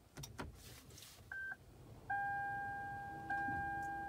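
Toyota Camry Hybrid's electronic dashboard chime as the car is powered on: a short beep just past a second in, then a steady chime tone that fades slightly and sounds again about every 1.2 seconds. A few faint clicks come before it.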